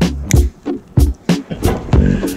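Background music with a steady drum beat over bass notes.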